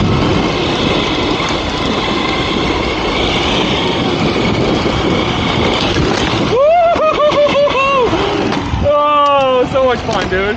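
Electric skateboard rolling fast on asphalt: loud wheel and wind rush with a faint steady high whine. About seven seconds in this gives way to a person's wordless whooping calls, a run of short rising-and-falling cries, and one more shout near the end.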